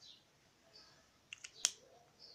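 Sketch pens being handled, a quick run of four or so sharp plastic clicks about a second and a half in, one louder than the rest.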